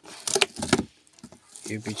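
Rustling and clatter of an angle grinder's power cable being pulled about inside its cardboard box, in a couple of short bursts in the first second.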